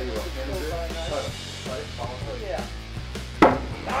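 A thrown knife hits the wooden plank target and sticks with a single sharp thunk about three and a half seconds in, over background music.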